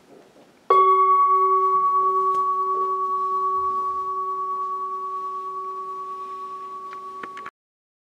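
Large metal singing bowl struck once about a second in, ringing with a low tone under a clearer higher tone and fading slowly with a gentle wavering. The ring is cut off suddenly near the end.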